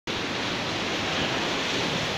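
Steady wash of sea surf on a rocky shore, with wind rumbling on the microphone.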